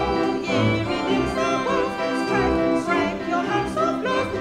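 A woman singing a hymn with vibrato, accompanied on piano.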